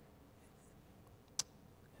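Near silence: quiet room tone, with a single short, sharp click a little past the middle.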